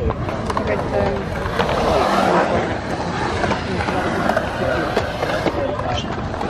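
Skateboard wheels rolling over the concrete of a skatepark bowl, with a few sharp clacks, under the steady talk of people around.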